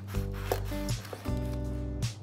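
A large kitchen knife cutting through a baked loaf's crust on a wooden board, a rubbing, scraping sound, over background music with held notes.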